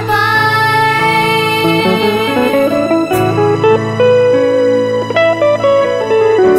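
Music: an instrumental passage of a slow Thai love song, melody notes stepping over a steady low bass line.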